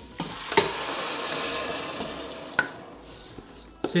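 Soaked basmati rice scraped from a steel bowl with a wooden spoon into a pot of hot oil and fried spices, sizzling as it lands. There are two sharp knocks, about half a second in and near the middle, and the sizzle dies down after the second.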